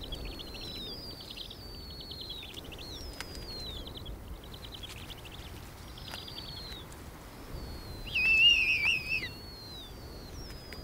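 Snowy owl chicks begging while being fed: repeated high, thin calls that fall in pitch, each followed by a rapid chittering. A louder, wavering call comes about eight seconds in.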